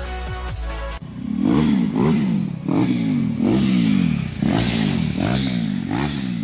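Electronic music for about a second, then it cuts abruptly to a motorcycle engine revved in quick repeated blips, each rising and falling in pitch, about two a second.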